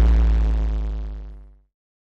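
Fading tail of an outro logo sting: a deep hit with a sustained ringing chord, dying away about one and a half seconds in.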